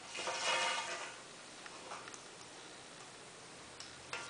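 Pattern-drafting tools on brown paper: one scraping stroke about a second long near the start, then a few faint light ticks as the ruler and pen are handled.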